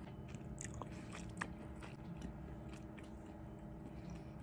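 A person chewing a mouthful of spaghetti close to the microphone: faint, wet mouth clicks and smacks, one slightly louder about a second and a half in.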